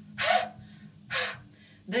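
A woman's two sharp, forceful breaths pushed out through the open mouth from the diaphragm, about a second apart: a relaxed-throat breathing exercise for singers.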